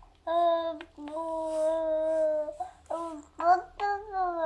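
A baby's voice making long, held sing-song vowel sounds: a short note, then one held for about a second and a half, then a few shorter ones near the end.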